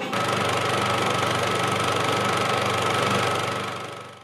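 A steady mechanical running noise with a low hum, like a motor or engine, starting abruptly and fading out near the end.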